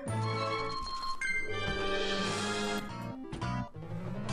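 Online slot machine game audio: electronic game music and chiming jingles as the reels spin and stop.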